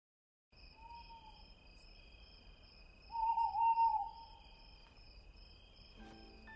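Night ambience of chirping crickets with an owl hooting, starting half a second in. A short, faint hoot comes about a second in, then a longer, louder wavering hoot around three seconds in.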